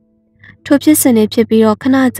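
A brief silence, then a voice narrating a story in Burmese, with a steady low hum beneath the voice.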